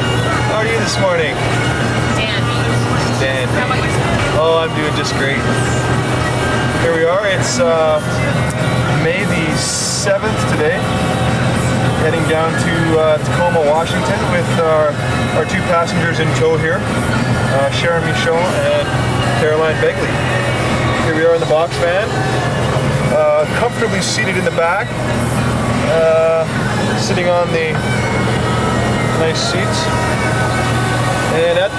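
Voices and music over the steady low drone of a van driving along, heard from inside the vehicle.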